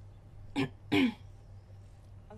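A woman clearing her throat: two short bursts about half a second and one second in, the second louder and dropping in pitch.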